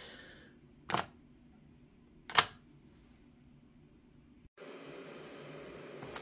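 Two sharp plastic clicks, about a second and a half apart, as the SoundPeats GoFree2 earbuds are handled over their open charging case and snapped into their magnetic slots. A faint steady hiss of room noise comes in near the end.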